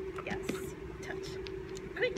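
Soft whispered cues from the handler over a steady hum, with a few light clicks from the dog's quick footwork on the hardwood gym floor.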